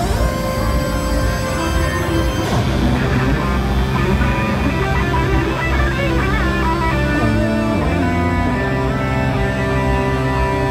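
Amplified electric guitar played through a Korg Kaoss Pad effects unit driven from a REVPAD touch controller on the guitar body: sustained notes, with wavering pitch glides in the middle.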